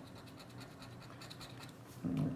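Faint, quick repeated scraping of a scratch-off lottery ticket's coating being scratched away to uncover a prize spot.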